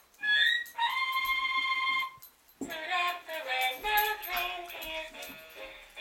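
A Christmas song from an electronic singing Santa toy: a long held note, a short break, then the sung melody carries on.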